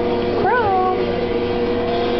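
A nine-week-old Pekingese puppy gives one short whine about half a second in, rising and then falling in pitch, over a steady hum in the background.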